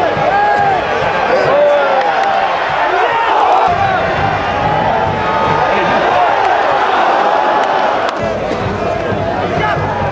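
Football stadium crowd shouting and cheering, many voices overlapping, with scattered hand claps.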